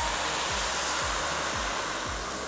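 Stock poured from a glass jug into a hot pot of toasted rice, with a steady hiss and rush as the liquid hits the hot pan.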